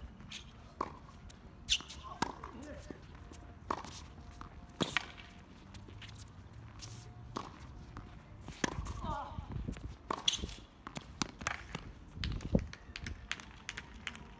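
Tennis balls being struck by rackets and bouncing on a hard court: sharp knocks at irregular spacing, roughly one to two seconds apart, with faint voices in the background.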